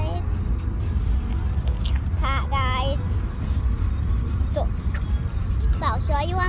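Steady low rumble of a moving car, heard from inside the cabin, with a brief wavering voice about two seconds in.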